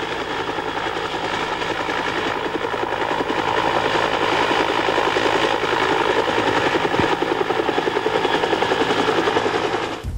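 Helicopter hovering close overhead, its rotor beating fast and steady over a dense rushing noise that grows slightly louder over the first few seconds.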